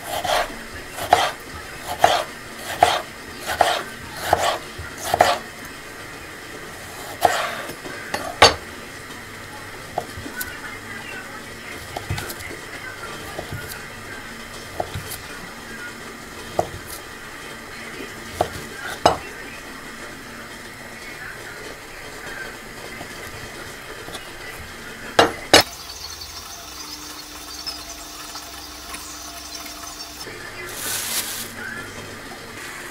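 Chef's knife cutting on a wooden cutting board, each stroke ending in a knock of the blade on the wood: a quick run of about seven cuts through a tomato in the first five seconds, then a few scattered cuts, and two sharp knocks near the end.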